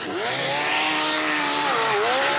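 Mercury outboard motor running at high speed as the boat runs onto a sandbar, with a rushing hiss of spray and sand. The engine note sags low just after the start, holds steady, then dips and climbs again near the end.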